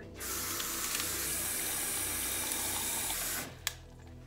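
Kitchen pull-down faucet running water into a plastic blender cup, a steady rush that stops about three and a half seconds in, followed by a single click.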